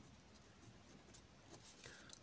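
Faint scratching and ticking of a pen writing by hand on a paper page.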